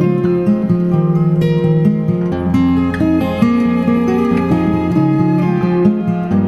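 Instrumental Celtic acoustic guitar music, a melody of plucked notes over moving bass notes.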